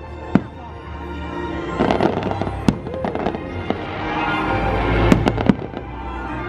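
Aerial fireworks bursting over a show's music soundtrack: sharp bangs just after the start and a little before the middle, then two close together near the end.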